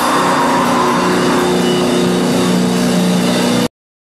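Loud live grindcore band with distorted electric guitar, settling about a second in into a held, ringing distorted chord. The sound cuts off abruptly into silence near the end.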